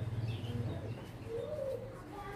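Pigeon cooing: a low rolling coo, then a rising-and-falling note about a second and a half in, with a brief higher chirp early on.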